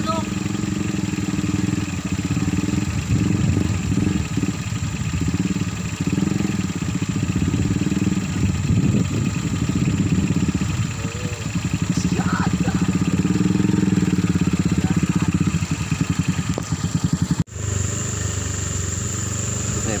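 Small motorcycle engine running under load as the bike is ridden slowly through deep mud and standing water, its note rising and falling with the throttle. Near the end the sound cuts off for an instant and gives way to a steadier engine drone.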